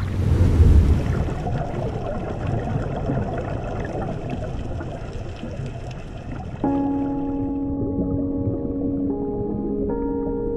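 Water sloshing and splashing around a camera at the surface, loudest in the first second and then fading. About six and a half seconds in, ambient music of long held chords begins and changes chord twice near the end.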